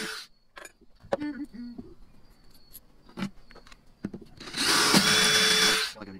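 Power drill boring a screw hole through a rod holder's flange into a boat's fiberglass gunwale cap: one steady burst of about a second and a half near the end, with the tail of an earlier burst at the very start. Light clicks of handling in between.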